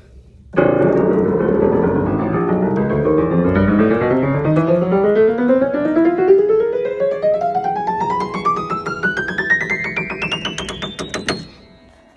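1920s Bösendorfer Model 214 semi-concert grand piano with Viennese action being played: after a low, full start, a long run of notes climbs steadily up the keyboard over about ten seconds and dies away at the top.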